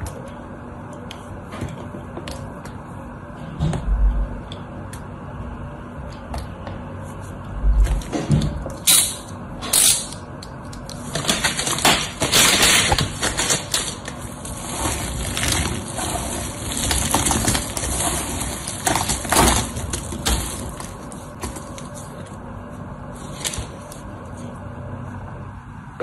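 Dry soap shavings and carved soap sticks crunched and crumbled by hand, a dense run of small snaps loudest through the middle. Before and after it, sparse light clicks of a craft knife cutting soap, and two dull thumps early on.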